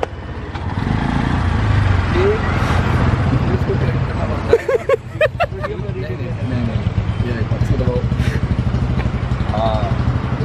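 A motor vehicle engine running close by: a steady low hum that comes up within the first second and holds, with short snatches of voices over it.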